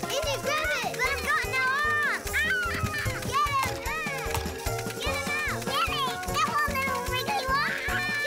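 Cartoon children's voices talking over light background music with a steady low beat.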